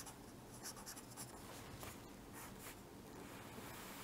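Felt-tip pen writing on paper: faint, short scratchy strokes in quick, irregular succession as letters are drawn.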